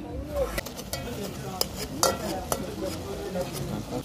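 Metal spoon stirring in an aluminium saucepan of tomato sauce cooking on the stove, knocking against the pot about four times, over a sizzle from the pan.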